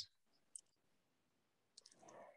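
Near silence with a faint click about half a second in and two more just before the end.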